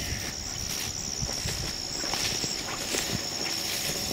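Footsteps swishing and crunching through tall grass and weeds, with a steady high-pitched insect drone from the field.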